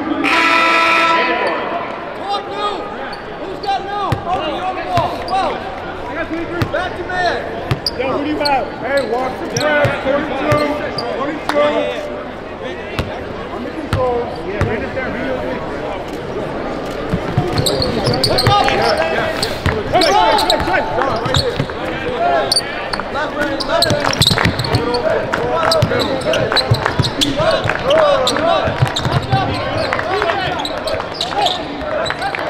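A basketball bouncing on a hardwood court, with indistinct voices of players and spectators in a large arena, and a loud pitched call right at the start.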